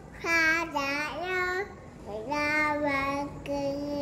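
A toddler singing a children's song in a small, high voice. Two short, wavering phrases come first, then after a brief pause a longer held note.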